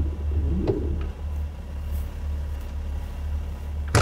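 A car engine idling with a steady low rumble, and one sharp knock right at the end.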